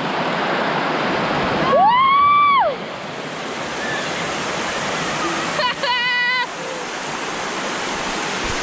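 Steady rush of a shallow waterfall pouring over a sloping rock slab. A long, high shout from a voice rises and falls about two seconds in and is the loudest sound. A shorter, wavering yell comes near six seconds.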